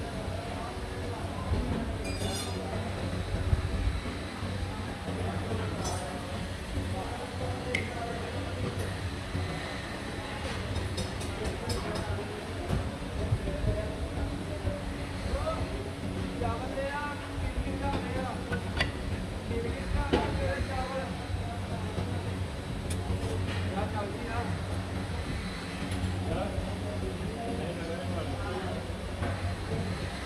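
Moulding work in a sand-casting foundry: occasional light metallic clinks and taps as a metal tool and an iron moulding flask are handled, over a steady machine hum and voices.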